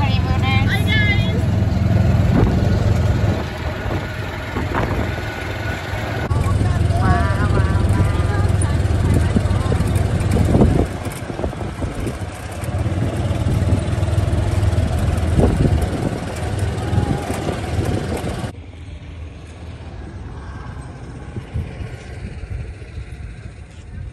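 Wind buffeting the phone's microphone over the road noise of an open golf cart in motion, with brief high voices near the start and again about seven seconds in. About eighteen seconds in, the noise cuts off to a much quieter outdoor hush.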